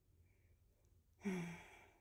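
A woman's sigh about a second in: a short low hum that trails off into a breathy exhale as she smells a perfume bottle.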